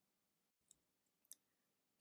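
Near silence: a pause in the narration, with one faint click a little past halfway.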